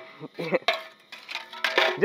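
Metal tongs and a flat metal bar clinking and scraping against a thin scorched tin lid and container, a few sharp clanks with brief metallic ringing.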